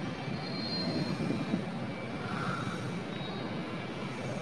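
Water sloshing in a bowl as hands rub and wash a whole pomfret fish, an even wash of noise with no sharp splashes.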